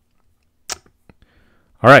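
A single sharp computer mouse click about two-thirds of a second in, amid a quiet pause, followed near the end by a man saying "All right".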